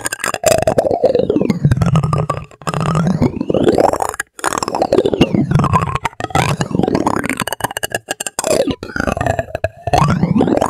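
Plastic spoons scraped and tapped close up: dense, rapid clicking and crackling with swooping sounds that rise and fall in pitch. It comes in stretches of a few seconds broken by brief pauses.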